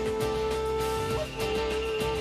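Opening theme music for a TV series: a long held melody note over a steady beat, moving to a slightly higher note a little over halfway through.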